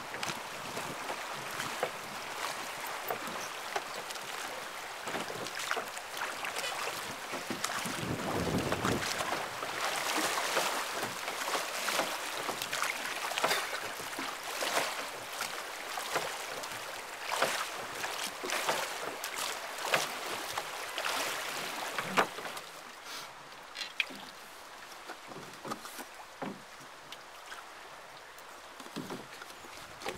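River water rushing and splashing around a drifting boat's hull, with many small crackling splashes and knocks. Wind hits the microphone in a brief low rumble about eight seconds in, and the water grows quieter over the last third.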